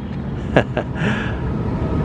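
Steady low rumble of downtown street background noise, mostly distant traffic, with a couple of faint clicks about half a second in.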